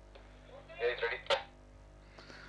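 Quiet stretch in a race-broadcast sound track: a low steady hum, a short faint snatch of voice about a second in, and one sharp click just after it.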